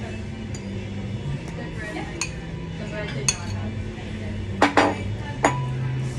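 Metal cutlery clinking against a ceramic bowl: a handful of sharp clinks, the loudest two close together near the end, over a steady low hum.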